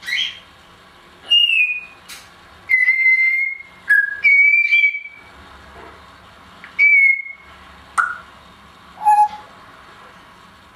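Timneh African grey parrot whistling: a string of about eight clear whistled notes with pauses between, a few held for under a second and some sliding slightly down in pitch, with one lower note near the end.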